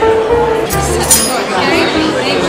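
Background music playing over the murmur of diners' chatter, with a sharp clink of tableware about a second in.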